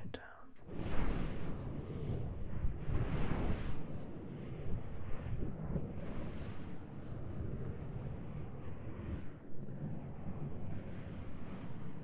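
Hands rubbing the ears of a binaural dummy-head microphone through ear muffs: close, muffled rustling and rumbling on the microphone, with a hissy swish that swells every few seconds.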